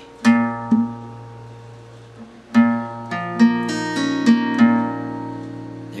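Acoustic guitar, tuned a half step down, picking a chord one string at a time so the notes ring into each other. Two notes come soon after the start and ring on, then a run of about six picked notes follows from about halfway through.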